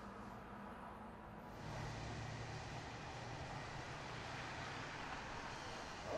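Faint, steady rumble and hiss of distant city traffic, with a low hum that swells about a second and a half in.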